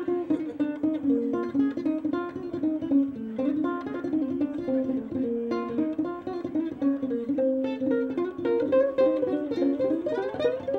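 Ukulele played solo, picked in a fast, continuous run of single notes and short phrases.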